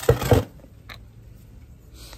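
Short burst of scraping and rustling in the first half-second as a small hand tool digs into potting soil, followed by a single faint click about a second in.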